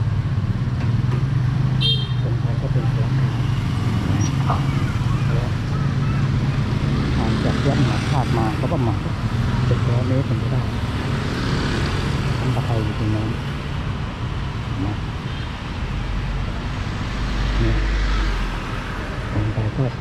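Street traffic on a wet road: a steady low engine hum, with motorbikes and cars passing and voices talking. A motorbike goes by about ten seconds in.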